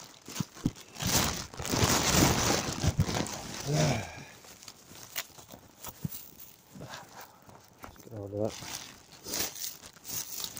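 Plastic rubbish bags crinkling and rustling as they are rummaged through by hand, loudest over the first four seconds. A man's voice makes two brief sounds, about four seconds in and again about eight seconds in.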